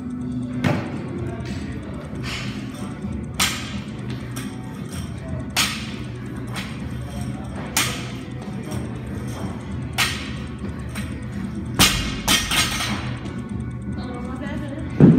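Workout repetitions: sharp impacts of exercise equipment about every two seconds, with two close together near the end, over steady background music.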